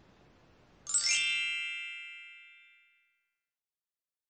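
A single bright chime sound effect struck about a second in, opening with a quick shimmer and then ringing out with several high tones that fade over about two seconds.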